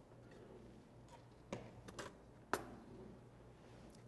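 A few light, sharp clicks and taps, the loudest about two and a half seconds in, from a small plastic container knocking against a plastic blender jar as pitted prunes are tipped in, over faint room hum.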